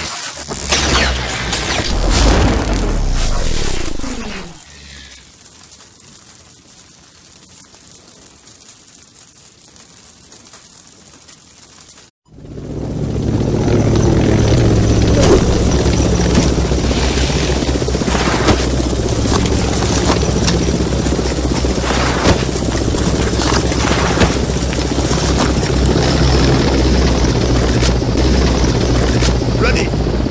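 Trailer sound effects and music: a loud burst with falling swoops for the first few seconds, a quieter stretch, then from about twelve seconds in a steady low rumble under music with scattered sharp hits.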